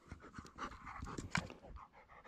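A dog panting, a quick run of short, faint breaths.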